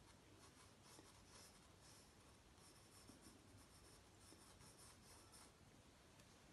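Faint pencil scratching on sketchbook paper: short drawing strokes in several spells with brief pauses between.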